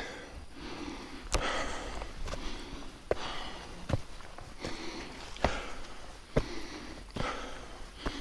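A man breathing hard while climbing steep stone steps, a loud breath about every second and a half, with short knocks of his footsteps on the stone between breaths.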